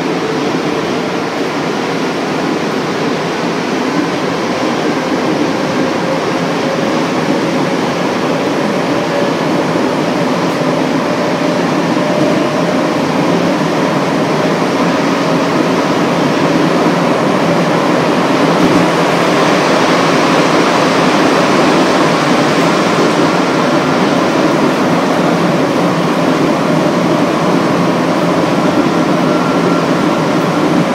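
Interior of a rubber-tyred 1966 MR-63 Montreal Metro car running through the tunnel: a loud, steady rolling rumble with faint whining tones, growing a little louder over the first half as the train picks up speed.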